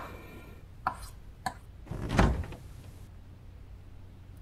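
Kitchen knife chopping an onion on a plastic cutting board: two short, sharp strokes in the first half. A louder, deeper thud follows a little after halfway.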